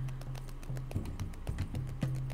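Craft knife blade cutting through a thick stack of corrugated cardboard layered with hot glue, making a dense run of irregular crackling clicks. Background music plays under it with a steady low note.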